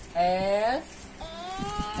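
Speech: a voice drawing out a word with falling pitch near the start, then another long syllable near the end.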